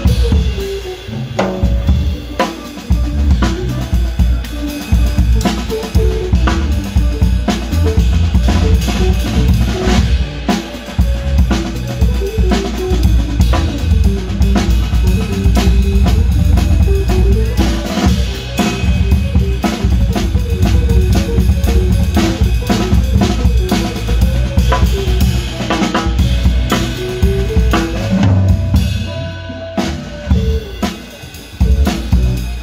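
A Nagano maple drum kit played in a small band, with kick drum, snare, toms and cymbals. The kick drum is locked to the bass line so that it lands on the bass notes. Underneath runs a deep bass line, and above it a melody line steps up and down in pitch.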